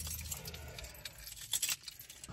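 Faint low rumble inside a car cabin, with a brief metallic jangle about one and a half seconds in.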